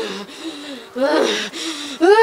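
A woman's voice in short, strained gasping cries, about three of them.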